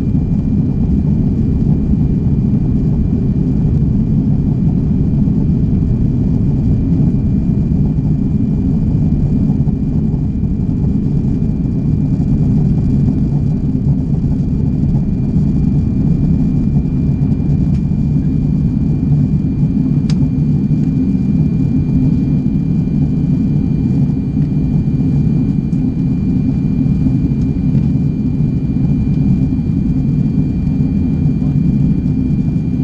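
Steady cabin noise inside an Airbus A340-600 in flight: a deep, even rumble from the airflow and its four Rolls-Royce Trent 500 engines, with a faint steady high whine over it. A single faint tick about twenty seconds in.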